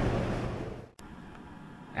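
Steady background hum and hiss of a large hall, fading out over the first second. At the cut there is a single sharp click, then only faint hiss.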